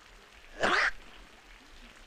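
A person sneezing once, a short sharp burst a little over half a second in.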